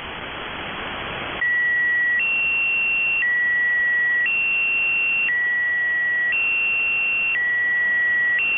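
Shortwave radio static, then about a second and a half in the Squeaky Wheel numbers station's channel marker comes on: two steady beeping tones, a lower and a higher one, alternating, each held about a second, heard through an upper-sideband receiver.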